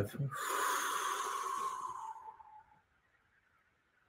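A man breathing out slowly and audibly, a breathy rush that fades out after about two seconds.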